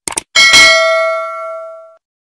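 Two quick mouse-click sound effects, then a single notification-bell ding that rings out and fades over about a second and a half.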